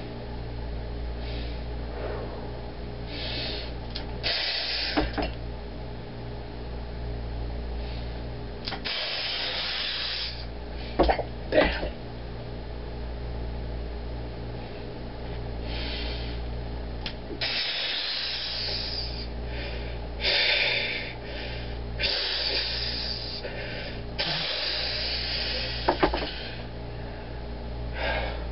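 Forceful hissing breaths from a man straining through a lift, coming in bursts of a second or two, over a steady electrical hum. Two sharp knocks come close together about eleven seconds in.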